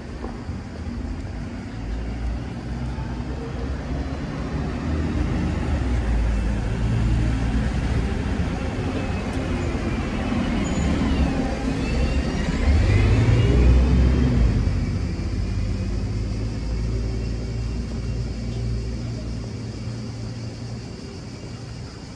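Street traffic with a motor vehicle passing close. Its rumble builds to a peak about thirteen seconds in, with a whine that rises and falls in pitch as it goes by, then fades.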